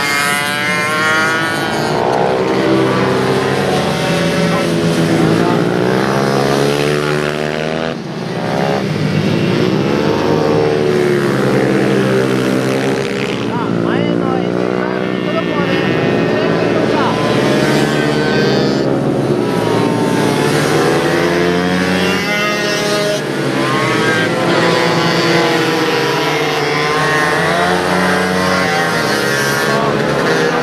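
Several small racing minibike engines running hard on a tight circuit, their pitch rising and falling continuously as they rev through the corners and pass by.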